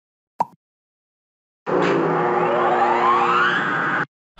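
A short pop, then an electronic intro sound effect about a second later: steady held tones under a sweep that climbs steadily in pitch, cutting off suddenly after about two and a half seconds.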